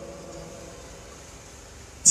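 Low, steady background hiss in a pause in a man's speech through a microphone and loudspeaker.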